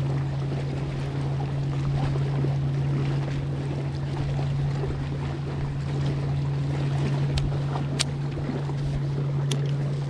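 A bass boat's motor giving a steady low hum, under wind noise and water. A few sharp clicks come near the end.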